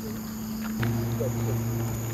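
Crickets trilling steadily at night, over a low steady hum that gets louder about a second in, with short low chirps scattered through.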